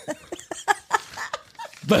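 A person making a few short, soft vocal sounds without words, irregularly spaced, with small pitch glides, quieter than the talk around them.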